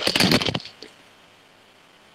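Phone handling noise: loud rubbing and scraping on the phone's microphone for about half a second, then only a faint steady hiss.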